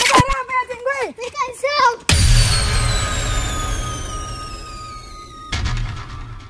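Electronic outro sound effect: a sudden loud whoosh about two seconds in, with several high tones sliding slowly downward over a steady hum, fading away, then a second shorter hit near the end.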